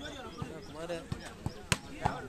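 Hands striking a volleyball: several sharp smacks, the loudest near the end, over a background of people's voices.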